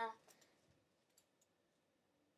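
A few faint, light clicks of plastic pens and highlighters being handled, in the first second and a half.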